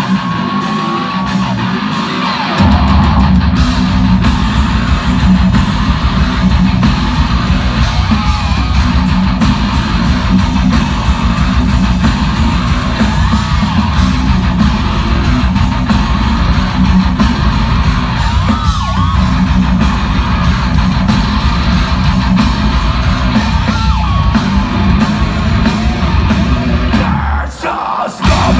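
Heavy metal band playing live, recorded loud from inside the crowd: electric guitar over a thinner opening, then the full band comes in with a heavy low end about two and a half seconds in and drives on steadily.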